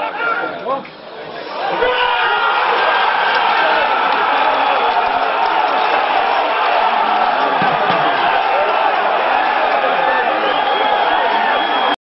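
Football crowd shouting and cheering a goal, a steady wall of many voices that swells about two seconds in and holds loud until it cuts off abruptly.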